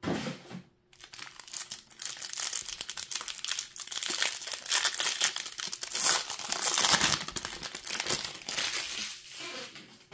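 Clear plastic wrapper of a trading-card hanger pack being torn open and crinkled by hand: a short knock right at the start, then a dense crackle that builds to its loudest about two-thirds of the way through and dies away near the end.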